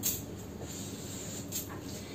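Chalk on a chalkboard: a few faint short strokes and taps, one right at the start and a couple near the end, over a low steady room hum.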